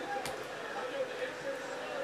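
A quiet gap between spoken lines: a faint voice in the background, and one short click about a quarter of a second in.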